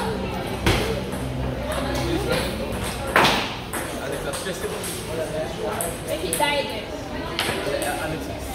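Table tennis ball clicking off the bats and table in a few sharp strikes as a rally ends, over background voices in the hall. The loudest, a sharp knock with a short ring after it, comes about three seconds in.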